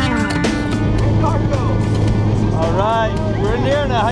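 Strummed guitar music ends about half a second in. Then the steady low drone of a skydiving plane's engine is heard inside the cabin, with indistinct voices over it.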